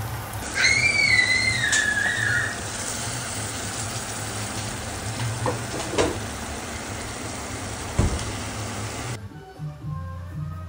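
Egg stew sizzling in a frying pan, a steady hiss. About half a second in, a high whistle-like tone rises quickly, then slowly sinks over about two seconds; it is the loudest sound here. A few light clicks follow, and background music starts near the end.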